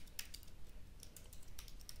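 Faint computer keyboard keystrokes: quick, irregular key taps while typing a username and password, with a short pause about half a second in.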